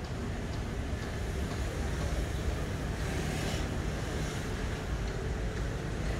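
Road traffic: a steady low rumble of cars, with a brief rise in hiss about three seconds in.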